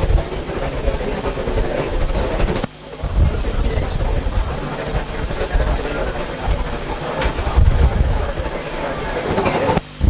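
Indistinct murmur of voices under a steady rumbling noise, with two brief drops in level, about 2.7 seconds in and just before the end.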